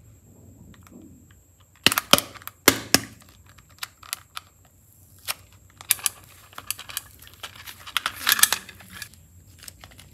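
Small hard-plastic toy suitcase handled and clicked open: two loud, sharp plastic snaps about two and three seconds in, then light scattered taps, and a quick run of clicking and scraping near the end as the clay is worked out of the case.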